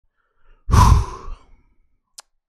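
A man's heavy sigh, a single breathy exhale blown close into a microphone, lasting under a second.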